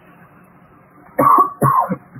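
A woman coughs twice in quick succession, a little over a second in.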